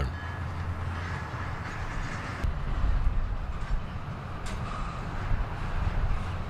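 Double-stack intermodal container train rolling past: a steady low rumble of wheels on rail, with a couple of faint clicks.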